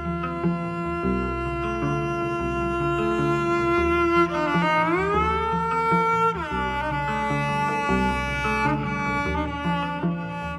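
Bowed cello playing a long held high note that slides up to a higher pitch about halfway through and back down a couple of seconds later, over a repeating lower figure. The piece is for cello with electronics.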